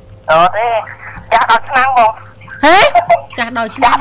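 Speech only: a voice talking in short phrases broken by brief pauses.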